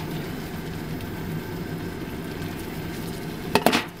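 Hamburger steak with onions and ketchup simmering in a frying pan: a steady sizzle, broken by one brief sharp clatter near the end.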